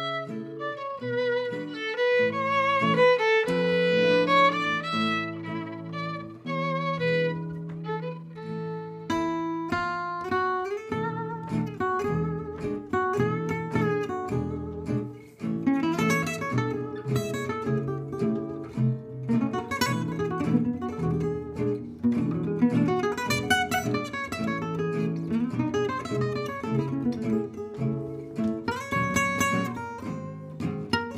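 Gypsy jazz quartet playing: for about the first nine seconds a violin carries the melody with vibrato over double bass and guitar, then the lead Selmer-Maccaferri-style guitar takes over with a busy solo over strummed rhythm guitar and walking double bass.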